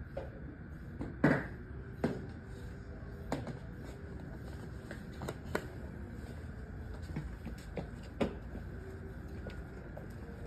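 A handful of scattered knocks and clicks from objects being handled, the loudest about a second in, over a steady low hum.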